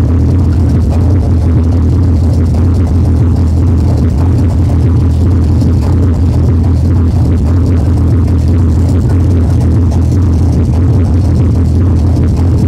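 Hardcore techno DJ set playing loud over a club sound system, with a heavy, steady bass.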